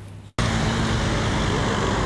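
Steady road traffic noise on a city street, cutting in suddenly about a third of a second in after a brief dropout.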